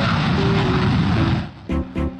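Fighter jet taking off on afterburner: a loud, steady rush of engine noise with a few music notes over it. It cuts off suddenly about a second and a half in, and music with heavy bass beats starts.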